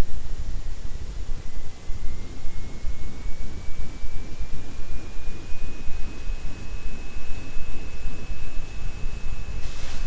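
Low rumbling background noise with a faint high whine that slowly rises in pitch, and a brief burst of hiss near the end.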